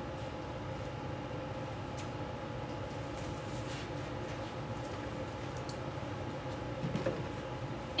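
Steady hum of a running air conditioning unit, with a few faint clicks and knocks.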